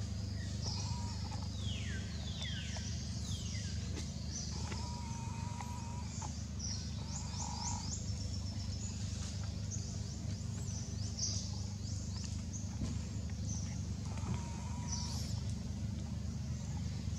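Background birdsong in tropical forest: repeated high whistled calls that sweep downward, mixed with short flat whistles, over a steady low rumble.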